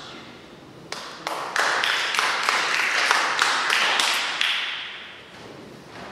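A small audience applauding: a spatter of hand claps starts about a second in, swells, and dies away after a few seconds.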